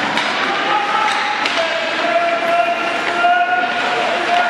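Ice hockey play in an arena: crowd noise over sharp knocks of sticks and puck against the boards, about three in the first second and a half. From about a second and a half in, a long held note sounds over the crowd.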